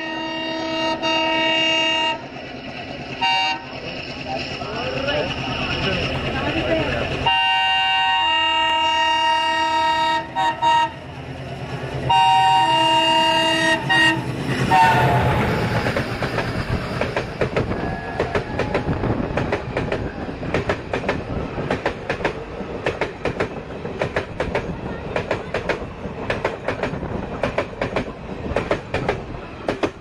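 An approaching train's locomotive horn sounds a chord of several tones in a series of long blasts, its pitch dropping as it passes close. The train's coaches then rush past with a fast, steady clickety-clack of wheels over the rail joints.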